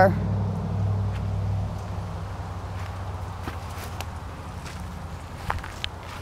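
Footsteps on grass as someone walks along a pickup truck, over a steady low engine hum that fades over the first two seconds.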